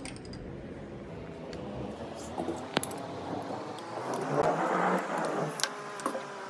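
A metal spoon handles chopped watermelon in a bowl, with one sharp clink a little before halfway. Later comes a soft wet wash as the watermelon cubes are tipped from the bowl into a glass jug of liquid.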